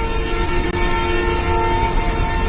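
Train horn sounding one long, steady chord of several notes over the low rumble of a train.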